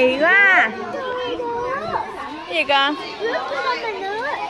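Young children's voices chattering and calling out over one another, with a loud high-pitched call just after the start and a short, sharp squeal a little before three seconds in.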